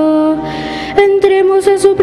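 Slow sung liturgical chant with long held notes: the melody steps to a new note, breaks off for a breathy hiss about half a second in, and resumes on a sustained note about a second in.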